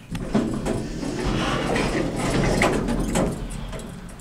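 Otis Otilec hydraulic elevator's sliding car doors moving: a steady rumble with several sharp clicks and knocks.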